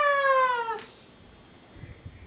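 A high falsetto puppet voice holding one long drawn-out call that slides slowly down in pitch and stops under a second in. A few soft low thumps follow near the end.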